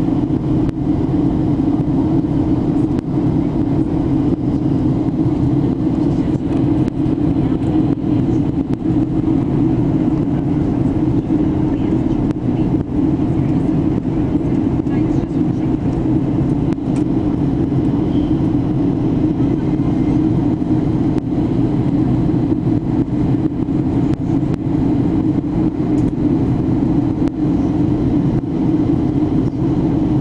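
Steady cabin noise inside an airliner in flight: engine and airflow noise heard through the cabin as a loud, even hum that does not change.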